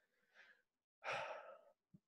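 A man's single audible breath, about a second in and lasting about half a second, in an otherwise near-silent pause.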